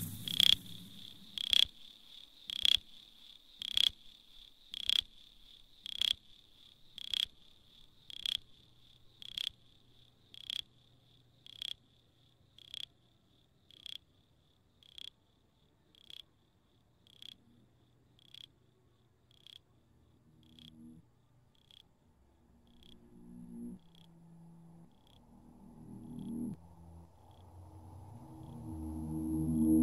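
Sparse minimal techno: a single sharp, ringing click-chirp repeats about once a second and fades away gradually. Low synth tones swell in over the last several seconds.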